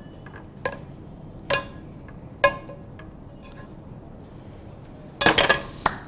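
Ringing clinks of a cooking pan and utensil against a serving bowl as fish curry is poured and scraped out: three clear clinks about a second apart, then a quick run of knocks near the end.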